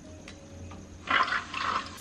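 A shower is turned on about a second in, and water starts spraying from the shower head with an uneven hiss.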